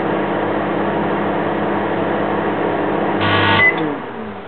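Microwave oven running with a steady hum. Near the end there is a brief louder buzz and a short high beep, then the hum cuts off and winds down as the oven stops.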